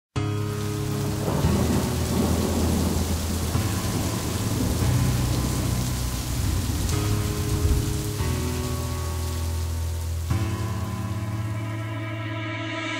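Heavy rain and thunder over sustained low synth chords that change every couple of seconds, as a song's intro.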